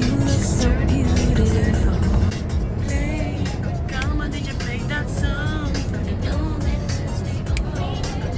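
Road and engine noise in the cabin of a moving car, a steady low rumble, with music playing and a woman's voice singing along in the middle of it.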